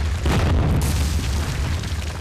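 Sound effect of a stone wall bursting apart: a deep boom over a steady low rumble, with a crash of breaking rubble about a quarter of a second in that trails off.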